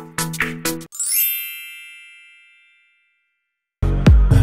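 Electronic music with short struck notes cuts off about a second in, and a single bright bell-like chime rings out and fades over about two seconds. After a brief silence, a loud new song starts just before the end.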